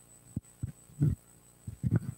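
Handheld microphone being handled as it is passed from one person to another: a few short low thumps and bumps over a faint steady hum.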